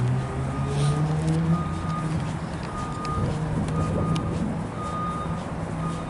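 A vehicle's reversing alarm beeping at one steady pitch, about once a second, over the low hum of a running engine.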